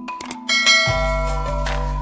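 Two or three quick mouse-click sound effects, then a bright ringing bell ding: a notification-bell sound effect. Background music with a steady bass comes back in about a second in.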